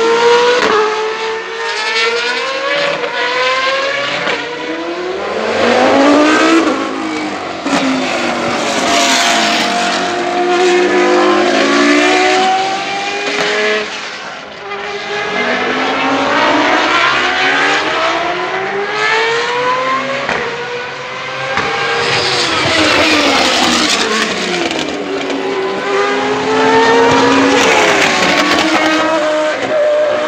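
Several open-wheel single-seater racing cars lapping at speed, high-revving engines overlapping, each climbing and dropping in pitch through gear changes and as it passes.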